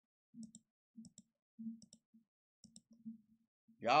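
Computer mouse clicking: about four quiet clicks, each a quick press and release, roughly a second apart, while the cursor scrubs back along a music player's progress bar.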